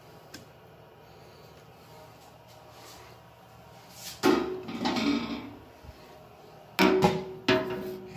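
Quiet room tone, then about four seconds in a sudden loud clatter of hard objects with a brief ringing tone. Two more sharp knocks with ringing follow near the end.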